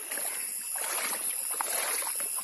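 Shallow stream running over a pebbly bed, babbling with small splashes. It gets louder at the very start and fuller a little under a second in, as the water runs wider and more rippled.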